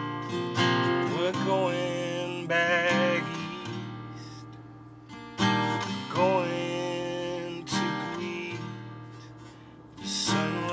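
Acoustic guitar played alone: strummed chords, each left to ring and fade before the next, with the strongest strums around three seconds in and again around five and a half to six seconds in.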